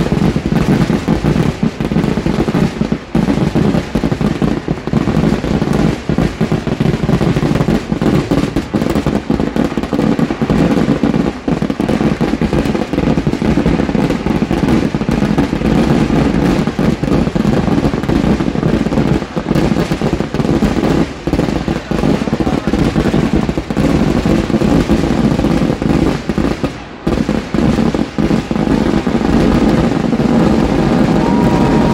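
Kerala temple-festival fireworks (vedikettu) going off in a dense, continuous barrage of explosions, so tightly packed that the blasts run together into one loud, unbroken din, with only a few brief let-ups.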